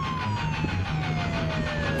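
A siren wailing, one long tone sliding slowly down in pitch, over a low rumble.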